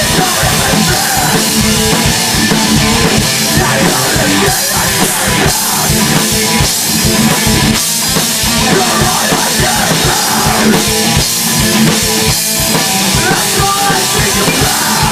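A rock band playing loud and heavy: electric guitars over a drum kit, with rapid bass-drum strokes throughout.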